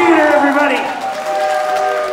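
People's voices talking and calling out on a live stage, with a steady held tone in the second half.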